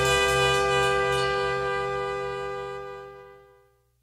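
The song's final chord held by the band with its horn section of trumpet, saxophone and trombone, fading steadily out to silence shortly before the end.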